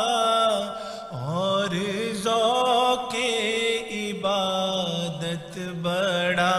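A solo male voice chanting an Islamic devotional recitation in a melodic style, holding long notes that slide and waver in pitch. The phrases break with short breaths about a second in and again near the end.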